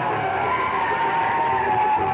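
Music played very loud through stacks of dozens of horn loudspeakers, with held high tones that drift slowly in pitch over a dense wash of sound.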